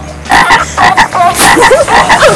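A small toy whistle blown in short, rasping, croaking calls, repeated about three to four times a second.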